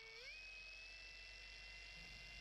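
Dual-action polisher running at low speed with its pad in a pad-washer plate: a faint, steady motor whine that rises slightly in pitch a fraction of a second in, then holds.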